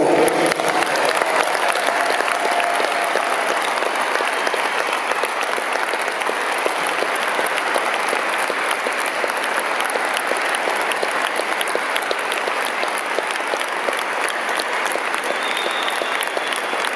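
Audience applauding steadily at the end of a song, the last sung and played notes giving way to the clapping right at the start.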